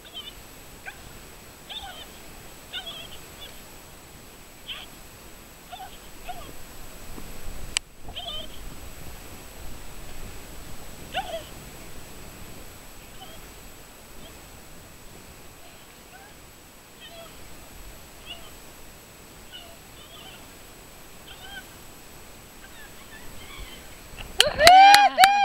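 Dogs barking, short faint barks at scattered intervals, with one sharp click about eight seconds in.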